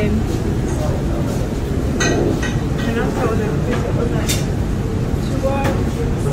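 Busy restaurant ambience: indistinct background voices over a steady low rumble, with a brief sharp click about four seconds in.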